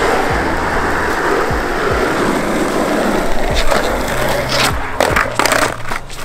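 Skateboard wheels rolling on a hard tennis-court surface, then a pop and several sharp clacks of the deck hitting the court as a fakie tre flip is tried, over background music with low bass notes.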